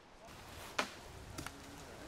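A single sharp knock about a second in, followed by a fainter tap, over a quiet outdoor background.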